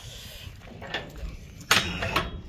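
Metal hook of a ratchet strap clinking against the steel cage of an IBC tote as it is unhooked: a faint click about a second in and a sharp knock near the end.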